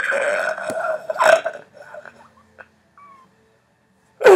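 A man laughing hard, a strained, high wheezing laugh lasting about a second and a half, followed by a few faint short sounds.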